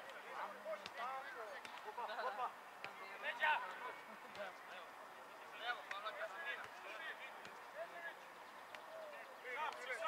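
Footballers shouting and calling to each other across the pitch, with a few sharp knocks of a football being kicked.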